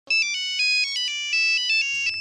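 Mobile phone ringing: an electronic ringtone melody of quick, bright notes stepping up and down, several to the second.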